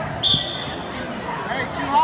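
Crowd chatter echoing in a large hall, with a thump about a quarter second in followed at once by a short, steady high-pitched squeal lasting about half a second.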